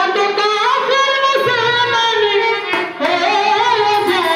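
A woman singing a Bengali song into a microphone, amplified through loudspeakers, in long wavering phrases with a short break for breath near the end, over a light instrumental accompaniment.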